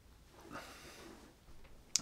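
A man's faint intake of breath, followed by a short mouth click near the end.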